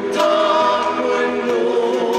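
A woman singing a held melody into a microphone, with a live band playing under her.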